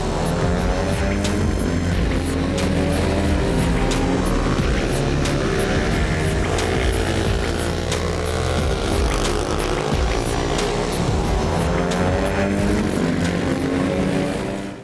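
Background music with a steady beat, mixed with several small racing motorcycles revving, their engine notes rising and falling over one another.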